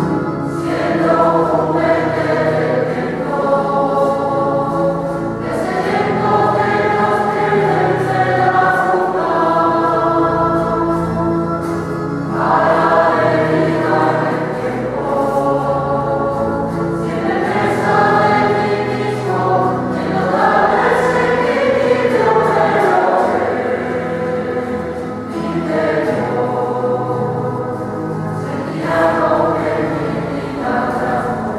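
A choir singing a slow hymn in long held phrases over steady low notes.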